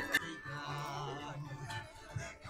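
Live band music in the background, with one long low note held through most of it.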